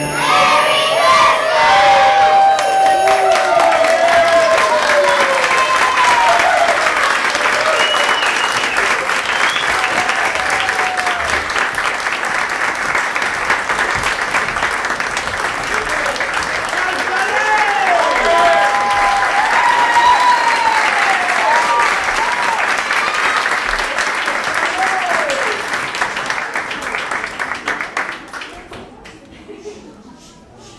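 Audience applauding, with cheers and whoops rising over the clapping in two waves, one in the first few seconds and one about two-thirds of the way through; the applause thins out near the end.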